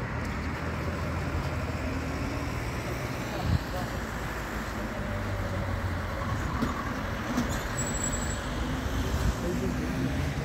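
Steady road traffic noise from a nearby street, with a single thump about three and a half seconds in.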